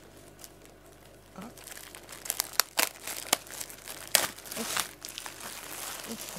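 Clear plastic shrink wrap being pulled and torn off a corrugated-cardboard cat scratcher. It crinkles irregularly, with several sharp crackles, starting about a second and a half in.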